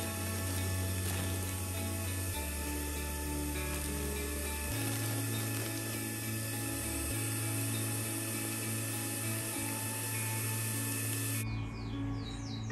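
Background music over the steady whir of a handheld vacuum cleaner drawing the air out of a vacuum storage bag; the whir cuts off about eleven and a half seconds in.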